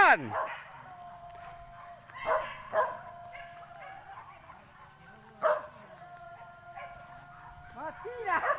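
Boar-hunting dogs barking in a few short, separate barks about two, three and five and a half seconds in, with a quick run of yelps near the end.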